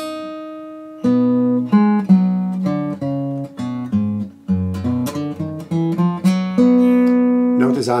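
A 1986 Greven FX acoustic guitar, capoed at the second fret, fingerpicked in a slow country-blues phrase. A single note rings out, then about a second in come separate plucked bass and melody notes together, ending on a held chord.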